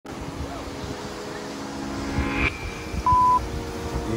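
A held droning chord of steady tones that swells and cuts off sharply about two and a half seconds in, then a short, loud, pure beep just after three seconds.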